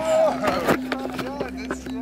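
An indistinct man's voice in the first second, over repeated handling knocks and a steady low hum.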